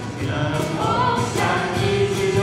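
A small mixed group of male and female voices singing a song together in held, sustained lines, with an acoustic guitar strummed beneath.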